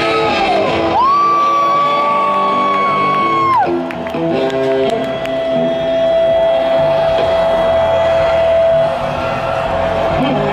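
Rock band playing live in a large venue, with a long held high note that bends up at its start and drops off after about two and a half seconds, then a steady lower held tone for about five seconds. The crowd whoops.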